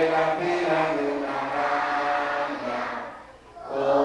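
Voices singing a song together in long held notes, with a short break between phrases about three and a half seconds in.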